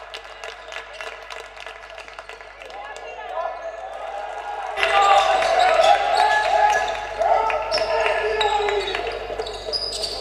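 Game sound in a basketball hall: a ball bouncing on a hardwood court among players' and spectators' voices. About five seconds in the sound cuts abruptly to another game and gets louder, with more voices.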